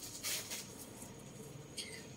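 Faint rustling and handling noise from a leather handbag being lifted and brought close, over quiet small-room tone; a short hiss near the end.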